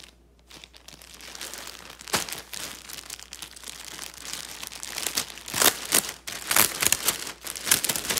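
Clear plastic garment bags around knit sweaters crinkling and rustling as they are handled. There is a sharp crackle about two seconds in and a run of louder crackles in the second half.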